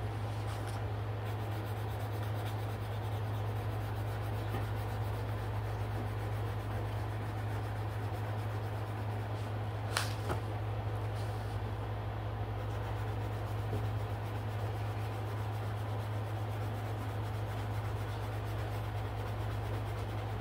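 A colored pencil rubbing on coloring-book paper over a steady low hum, with a single sharp click about halfway through.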